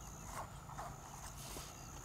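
A few soft clicks and scrapes of a knife working at a freshwater mussel's shell to pry it open, over a faint steady high-pitched hiss.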